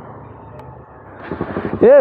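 Low steady road and vehicle engine noise that grows louder about a second in, then a man calls out "Hey" at the very end.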